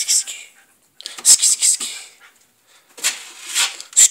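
A man's whispered, hissing urging of a puppy to attack a rope toy: sibilant "sss" bursts in three spells with short quiet gaps between them.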